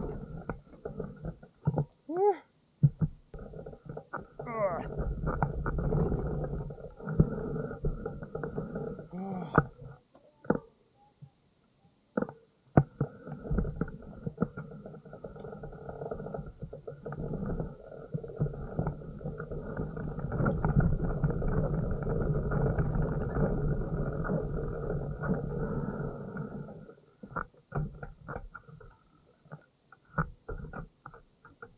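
Small motorcycle engine running at low speed on a rough gravel track, with wind buffeting on the microphone. The sound drops away briefly about ten seconds in and falls off near the end.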